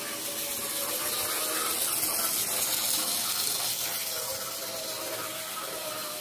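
Small electric motor of an OO-gauge model locomotive running steadily: an even whirring hiss with a faint wavering whine.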